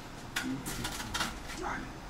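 A spatula clicking and scraping against a metal baking tray as baked open sandwiches that have stuck are worked loose, in a series of sharp clicks that start about a third of a second in.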